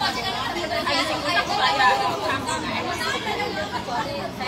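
Several people talking at once: continuous overlapping chatter in which no single voice stands out.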